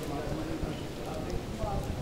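Faint, indistinct voices of people talking, over a low rumble, with a few scattered clicks.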